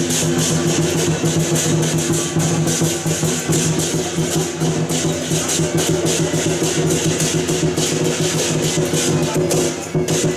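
Lion dance percussion: drum and clashing cymbals beaten in a fast, steady rhythm, with a held low ringing under the hits.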